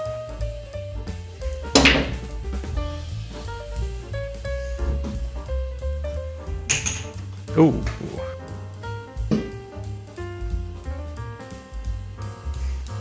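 Background music with a steady bass line. Over it come two sharp clacks of pool balls from a shot, about two seconds and about seven seconds in; the first is the louder.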